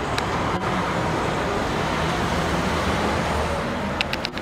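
Steady city street noise: road traffic heard from high up through an open window, a continuous rumbling hiss with two faint clicks in the first second.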